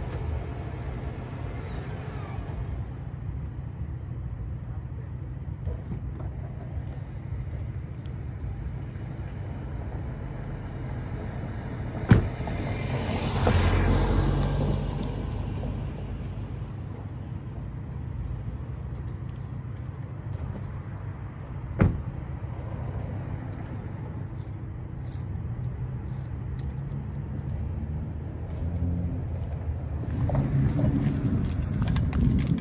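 Steady low rumble of a pickup truck pulled up at the curb, with two sharp car-door clunks, about twelve and twenty-two seconds in. Just after the first clunk comes a brief swell of noise.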